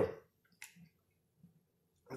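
A brief soft squish about half a second in, followed by a couple of faint small clicks: a pepper half being pressed into a peanut butter and jelly sandwich.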